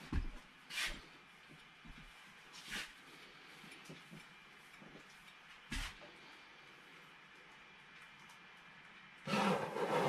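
Quiet studio room tone with a few faint scrapes and a short knock about six seconds in. Near the end, a louder rough rubbing: a paintbrush scrubbing oil paint onto canvas.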